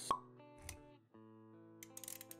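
Intro music with sustained, guitar-like notes, under animation sound effects: a sharp pop at the very start and a soft low thud a moment later. The music cuts out briefly near the middle, then comes back.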